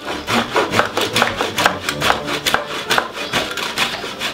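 A block of Parmigiano Reggiano being grated on a stainless steel box grater: quick, even rasping strokes of hard cheese against the metal blades, about four to five a second.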